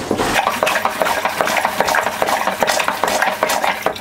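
Manual marine toilet being pumped by hand in flush mode, a quick, even run of pump strokes moving water through the bowl and waste to the holding tank; the pumping stops at the very end.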